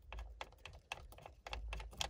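Hands working at the steering-wheel hub, around the loosened 17 mm centre bolt and the wheel's wiring: a fast, irregular run of faint small clicks and rattles.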